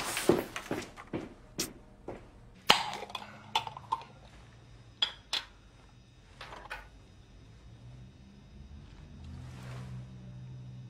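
A metal teaspoon and a metal screw lid clinking against a glass jam jar: a handful of sharp chinks, some ringing briefly, over a few seconds, then quiet.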